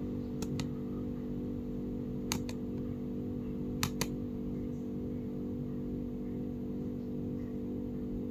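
Three quick double clicks of a computer pointer button, each pair a fifth of a second apart, as the up-arrow is clicked to move the USB drive up the boot order. Under them runs a steady low hum.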